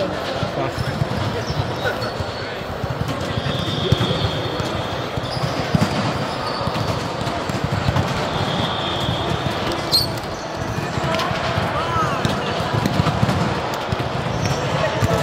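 Volleyballs being struck and bouncing on the hard court floor of a large, echoing sports hall, with many players' voices mixed together in the background. Two brief high squeaks come about 3.5 and 8.5 seconds in, and a sharp click comes about 10 seconds in.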